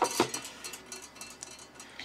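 Light clicks, then faint rapid ticking from a small 3D-printed plastic robot mechanism being handled.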